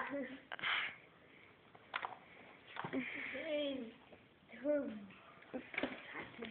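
Faint voices in the distance, a couple of drawn-out calls around the middle and again near the end, with a short sharp click about two seconds in.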